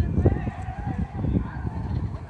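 A distant shouted call from a voice, gliding in pitch for about a second, over a low rumble of crowd and wind noise.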